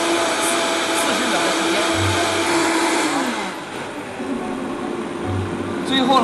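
High-speed countertop blender running at high speed, blending fruit and vegetable juice into a smooth drink. About three and a half seconds in, its pitch glides down and it runs on more quietly at a lower speed.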